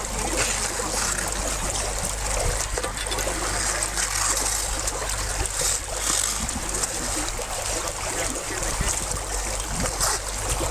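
Icy lake water splashing and trickling among broken ice and slush as people in a hole in the ice clamber onto its edge.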